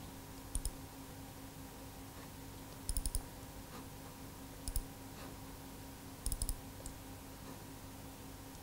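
Clicking on a Dell laptop, in short runs of two to four quick clicks a few times over, with a steady low electrical hum underneath.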